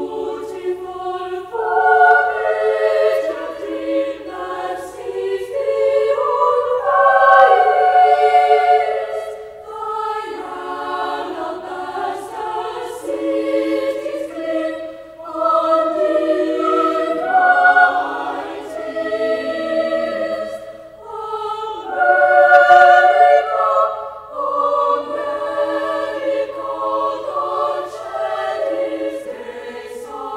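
A boys' choir singing long held notes in phrases that swell and fade, loudest about a quarter of the way in and again about three quarters through.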